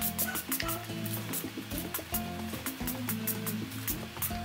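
Background music with a bass line, a simple melody and a quick, steady ticking beat.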